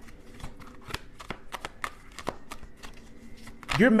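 A tarot deck being shuffled by hand: a string of quick, irregular card clicks and flutters.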